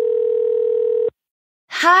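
Telephone ringback tone: a single steady, even-pitched ring held for about two seconds and cutting off about a second in, as an outgoing call rings through before it is answered.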